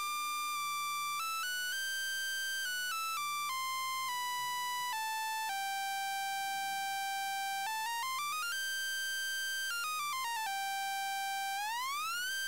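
Sawtooth-wave tone from the RANE Performer's tone generator, held at a steady level and stepping up and down between notes, with a few smooth glides between pitches and a rising glide near the end.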